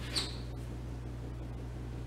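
Quiet room tone with a steady low hum. A brief, faint high-pitched squeak-like sound comes about a quarter second in.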